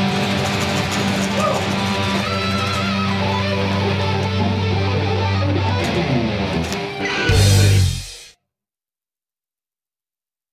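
Three electric guitars playing together through amplifiers in a heavy metal style over a held low note. Near the end a louder low chord sounds briefly, then the sound cuts off suddenly.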